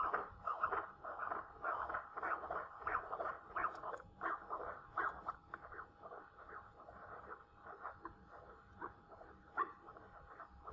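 Pulsed-wave Doppler audio from a cardiac ultrasound machine sampling mitral valve flow: rhythmic whooshing pulses that beat with the heart, with a faint steady tone beneath. About halfway through, the pulses grow fainter as the pulse repetition frequency is raised so high that the Doppler loses sensitivity to the flow.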